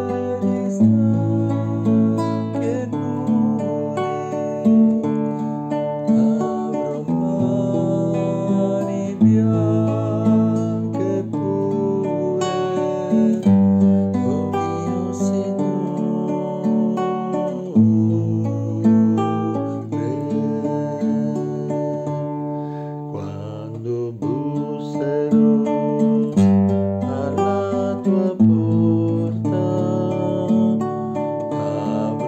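Nylon-string classical guitar playing chords, with the bass note moving every two to three seconds.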